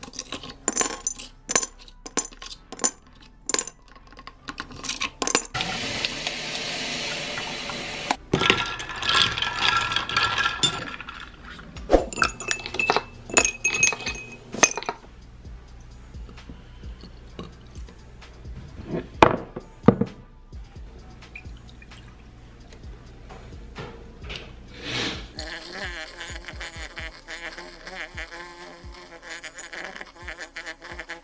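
Ice cubes clinking as they drop into a glass mason jar, then liquid pouring over the ice, with further clinks of glass. Near the end a handheld milk frother starts whirring steadily in a glass of oat milk and creamer.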